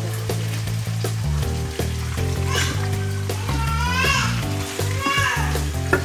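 Chicken pieces sizzling as they fry in a pan with onions, under background music with steady bass notes. A high-pitched voice comes in over it about two and a half seconds in.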